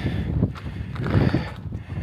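Wind buffeting the microphone on an exposed summit: an uneven low rumble that rises and falls in gusts.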